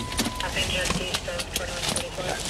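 Inside a stopped police patrol car: a steady engine rumble with scattered clicks and knocks of the officer moving about the cabin, a thin steady beep that stops about half a second in, and faint voices in the background.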